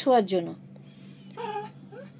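Small long-haired dog vocalising in whiny, pitched grumbles: one falling in pitch and ending about half a second in, and a shorter one about one and a half seconds in.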